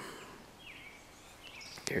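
Quiet woodland background with a faint, brief bird chirp a little under a second in, before a man starts speaking again near the end.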